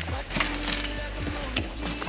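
A large fabric dome liner being bundled up by hand: rustling with irregular small clicks and knocks, over a steady low hum.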